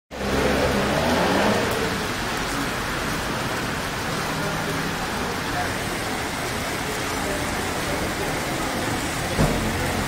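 Heavy rain pouring onto a wet street and pavement in a steady hiss, with vehicles driving through the water on the road. A single knock about nine seconds in.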